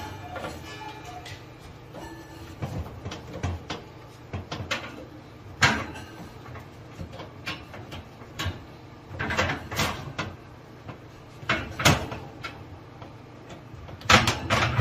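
Wire oven rack clinking and rattling as silicone rack shields are pushed onto its front rail and the rack is moved on its runners: scattered knocks, the loudest about six seconds in, with a cluster between nine and thirteen seconds.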